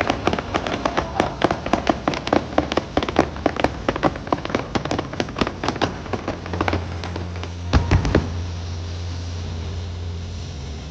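Fireworks finale: a rapid volley of firework bursts, several sharp cracks a second for about six seconds. A few heavy booms follow close together about eight seconds in, then a low steady rumble.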